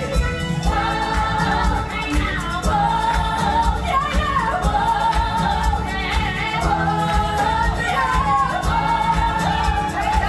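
A live stage musical number: a cast singing together over a band that includes bowed strings.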